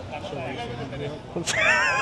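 Voices of people talking in an open plaza, then about one and a half seconds in a loud, high, wavering cry that lasts nearly a second.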